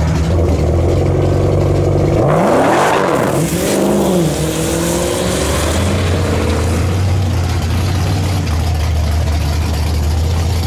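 Dodge Challenger SRT Demon 170's supercharged 6.2-litre V8 running as the car rolls slowly down the drag strip after an aborted, tyre-spinning launch. It is a steady low rumble, with a rev that rises and falls back about two to four seconds in, then a slow climb in pitch.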